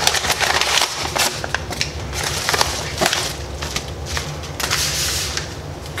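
Padded bubble mailer crinkling and rustling as its contents are pulled out by hand, with many irregular sharp crackles.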